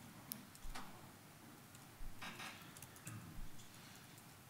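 Faint laptop keyboard keystrokes, a few scattered clicks and short runs of taps as a terminal command is typed.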